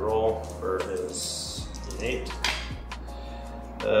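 Dice rolled onto a tabletop for a defense roll: a short rattle about a second in, then a few sharp clicks as they land.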